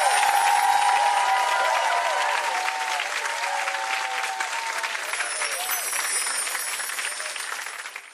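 Studio audience applauding, dying away near the end.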